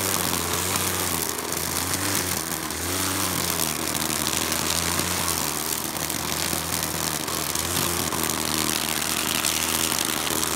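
Corded electric string trimmer (weed eater) running as it cuts weeds, its motor pitch wavering up and down with a steady whirring hiss from the spinning nylon line.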